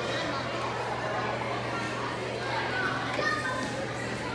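Indistinct chatter of several children's voices overlapping across a school cafeteria, over a steady low hum.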